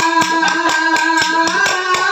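Folk percussion from small hand cymbals and a dollu drum, struck in a fast, steady beat of about four strokes a second, under a held melodic note.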